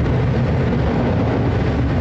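Be-200 amphibious water bomber heard from on board while skimming the water surface to scoop up water: a loud, steady rush of engine and water noise, heaviest in the low end.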